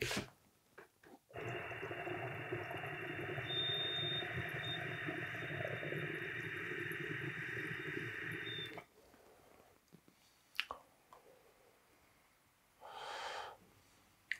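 A long draw through a glass water-pipe attachment on a desktop vaporizer: about seven seconds of steady airy bubbling with a faint high whistle, stopping abruptly. A short exhale follows near the end.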